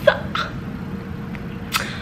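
A woman's short breathy laughs: two quick ones at the start and another near the end, over a steady room hum.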